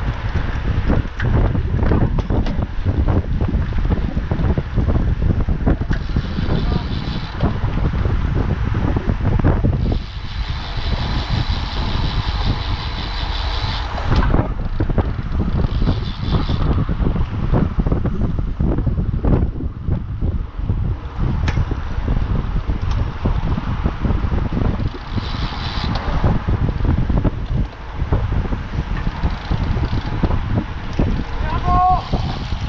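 Heavy wind buffeting on a bike-mounted camera's microphone over the road and tyre noise of a group of road bikes riding together. Several times a rapid, high ticking comes in for one to four seconds, the freewheel hubs of coasting bikes.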